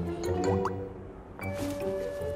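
Background music from the drama's score: held notes with a few short rising slides and light, sharp clicking accents.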